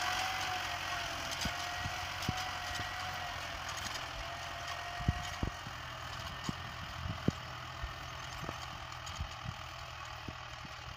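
Tractor engine running steadily under load as it pulls a disc plough through dry soil, with a steady whine over the hum and a few scattered sharp clicks. It slowly grows fainter as the tractor moves away.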